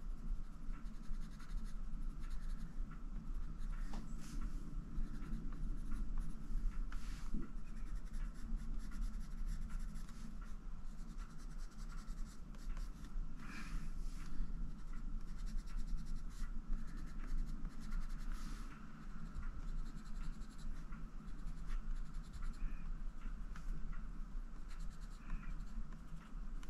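Prismacolor Premier coloured pencil scratching across the paper in short, repeated strokes, laying dark grey shading.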